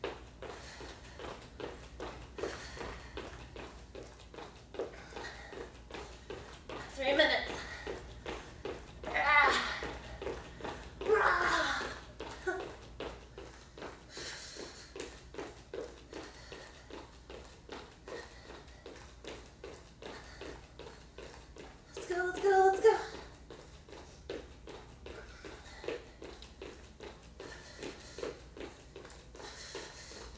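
Sneakers landing on a wooden floor during jumping cardio exercise, a steady run of soft thuds about two or three a second. A few short voiced exclamations break in, about a second each, the loudest near three-quarters of the way through.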